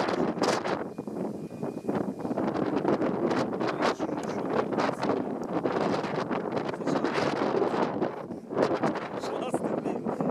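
Wind buffeting the microphone: an uneven rushing noise that keeps rising and falling in gusts.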